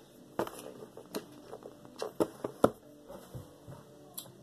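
Handling noises of foam squishy toys on a tabletop: a handful of short, sharp taps and knocks, the loudest about two-thirds of the way through.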